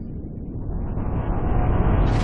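A low rumbling sound effect that swells steadily in loudness, part of an animated logo intro.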